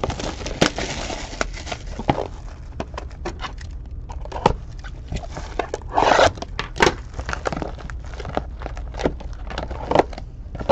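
A sealed cardboard trading-card box being unwrapped and opened by hand: plastic shrink wrap crinkling and tearing, then cardboard scraping and knocking as the lid comes off and the packs are lifted out. There is a louder rustle about six seconds in and many sharp clicks throughout.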